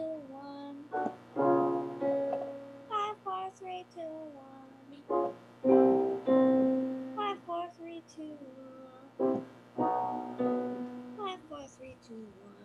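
A piano chord followed by a young girl singing a five-note scale that steps downward, three times over: a five-four-three-two-one vocal warm-up, heard through a video call.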